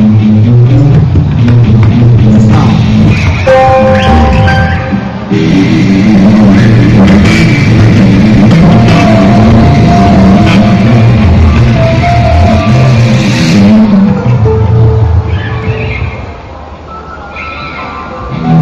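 Live band playing loud rock music, with held electric-guitar lead lines over bass; the music drops back briefly near the end.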